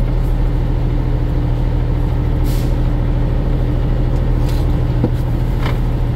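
A truck's diesel engine idles, heard from inside the cab as a steady, unchanging low hum.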